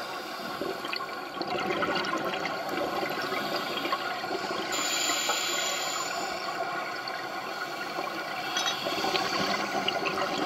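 Scuba divers' exhaled air bubbles rushing and gurgling underwater.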